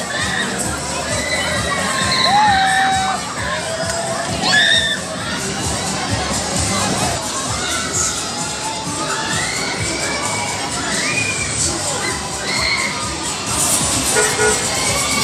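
Many children shouting and cheering at once, overlapping shrieks that rise and fall in pitch, typical of young riders on a spinning fairground ride.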